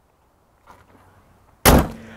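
The aluminium hood of a 2018 Ford F-150 Raptor closing with a single loud bang about a second and a half in, then fading quickly.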